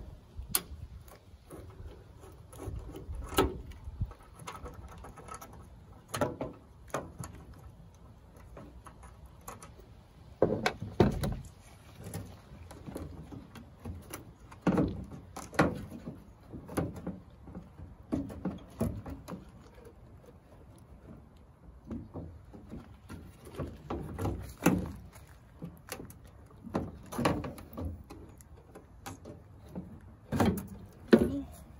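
Irregular clicks, knocks and plastic rattles as Torx screws are backed out and a 2009 Dodge Ram 1500's plastic tail light housing is worked loose from the bed pillar by hand, with louder clusters of knocks now and then.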